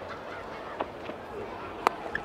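Faint stadium crowd noise, broken near the end by the sharp crack of a cricket bat striking the ball.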